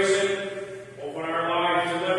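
A man chanting liturgy on held, steady notes, one phrase ending and the next beginning after a short break about a second in.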